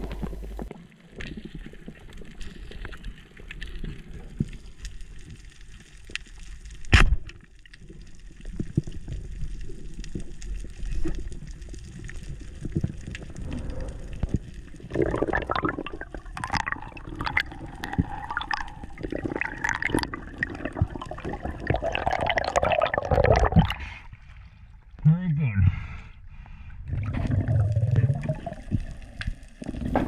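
Muffled underwater water noise picked up by a diver's camera, with one sharp click about seven seconds in and murky, voice-like sounds through the second half.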